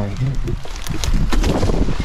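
Dry driftwood sticks and brush crackling and rustling as someone clambers over a logjam, with a low rumble of wind on the microphone.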